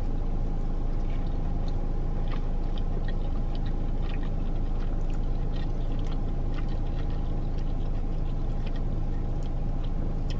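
Chewing a fried chicken finger, with small scattered mouth clicks, over a steady low hum inside a car cabin.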